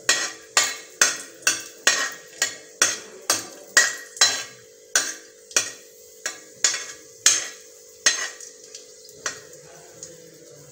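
Metal spoon scraping and knocking against a metal kadai while stirring cashew pieces roasting in it, about two strokes a second, thinning out near the end.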